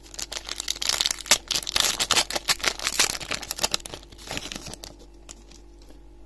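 Pokémon TCG booster pack's foil wrapper being torn open and crinkled by hand, a dense crackle that eases off after about four seconds.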